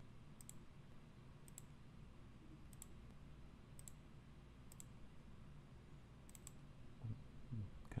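Faint computer mouse clicks, about seven or eight, spaced irregularly about a second apart, over a low steady hum.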